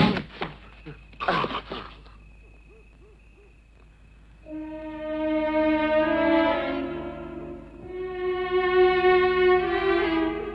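A sharp thump and a short cry at the very start, a brief lull, then a slow, sorrowful film score of bowed strings (violins and cellos) that comes in about four and a half seconds in and swells twice.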